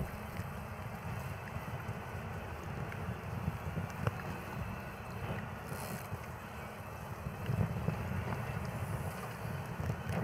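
Wind rumbling on a bicycle-mounted camera's built-in microphone while riding, a steady low buffeting with a faint hiss above it and a few small clicks.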